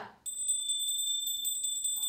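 A steady high-pitched electronic tone, like an alarm beep, with a fast run of regular clicks through it. It starts just after the chanting cuts off and ends about half a second after the clip.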